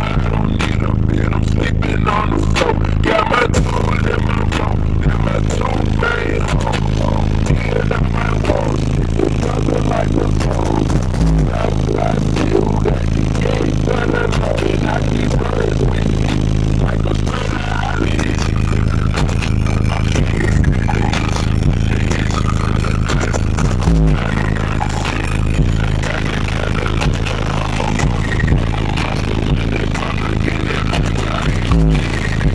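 Car audio system playing bass-heavy music very loud through six 12-inch subwoofers in a fourth-order bandpass box. Long deep bass notes shift every few seconds, with a couple of sharper deep hits. The cabin's panels and headliner rattle and buzz under the bass.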